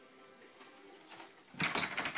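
An interior door being handled and pushed open, making a short burst of noise about one and a half seconds in, after a quiet start.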